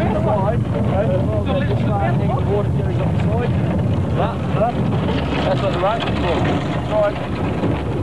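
Several men's voices shouting and calling over each other, with no clear words, over a steady low rumble of wind on the microphone.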